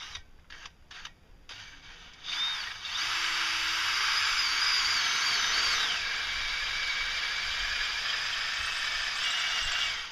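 DeWalt cordless drill boring through a stainless steel shovel blade: a few short clicks, then about two seconds in the drill runs steadily with a high, wavering squeal from the bit cutting the steel.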